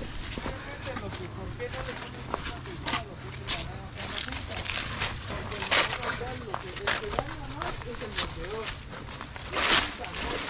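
Indistinct background voices talking, with scattered short scuffs and clicks over them.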